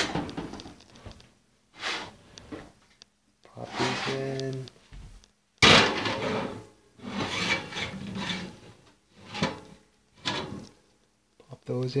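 A kitchen oven door opening with a sudden clunk midway, and a plate being slid onto the oven's wire rack with scraping and rattling. Short handling knocks come before it.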